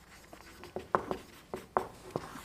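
Marker pen writing on a whiteboard: a run of short strokes, about eight in two seconds.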